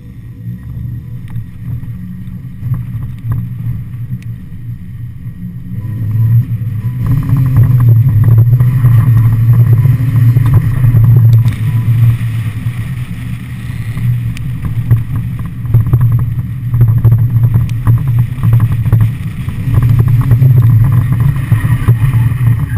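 Mazda MX-5 Miata's stock 1.6-litre four-cylinder engine driven hard while drifting, its note rising and falling with the throttle. It is moderate for the first few seconds, then much louder from about six seconds in.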